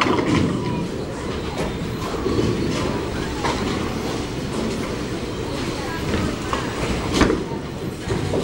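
Bowling alley noise: the continuous low rumble of bowling balls rolling on the lanes and through the ball return, broken by scattered clatters and knocks of pins and balls, the loudest about seven seconds in. Faint voices mix in.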